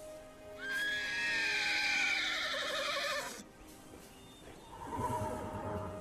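A horse's long whinny that slides down in pitch with a wavering tremble, then a shorter, lower horse sound near the end, over soft background music.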